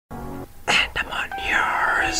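A short intro sting: a voice over music, with a gliding pitch sweep near the end.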